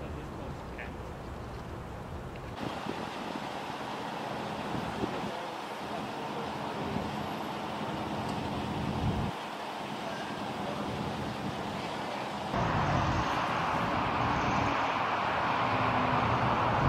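Steady road and idling-engine noise with faint voices at times. The sound jumps abruptly about two and a half seconds in and again about three seconds before the end, growing louder after each jump.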